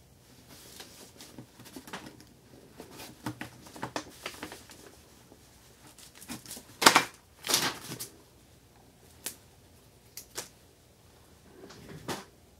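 Small clicks, taps and rustles of hands handling two taped-together dimes and a strip of servo tape, with the loudest clicks about seven seconds in and a few single clicks after.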